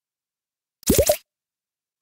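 A short cartoon-style plop sound effect: two or three quick rising bloops about a second in, with silence around them.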